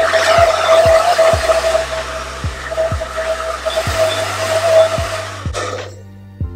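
Handheld hair dryer blowing steadily with a high whine, blow-drying hair, over background music with a deep bass beat. The dryer cuts off suddenly near the end.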